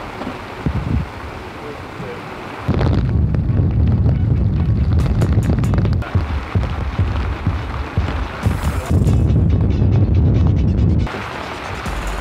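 Background music with a heavy bass line and muffled highs, starting abruptly about three seconds in after a quieter stretch and dropping away shortly before the end.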